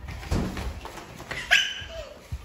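A dull thump about a third of a second in, then a short high-pitched squealing cry of under half a second near the end.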